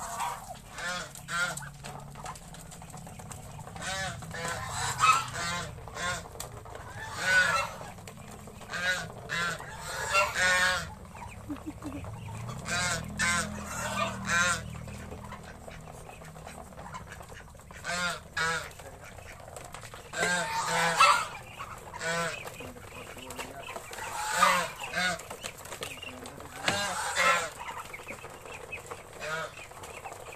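Domestic geese honking repeatedly in bursts of calls, with a quieter spell in the middle.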